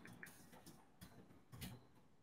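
Faint computer keyboard keystrokes: about half a dozen separate key clicks, unevenly spaced, as a command is typed.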